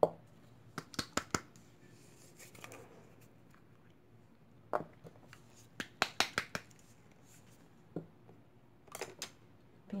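Light clicks and taps of a small plastic paint jar and its screw lid being opened and set down on a table, some single, some in quick clusters of three or four.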